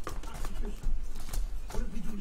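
Cardboard trading-card boxes being handled on a table: a few sharp knocks and taps spread through, with rustling of the packaging in between.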